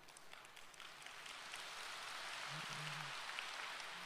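A large audience applauding, faint, swelling over the first couple of seconds and then holding steady.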